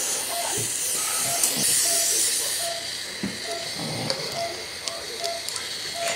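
Patient monitor beeping steadily, a short mid-pitched tone about twice a second, the pulse tone of a sedated patient. A hiss under it for the first two or three seconds, then stopping.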